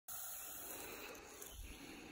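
Faint, steady hiss of a disturbed eastern hognose snake, fading out after about a second.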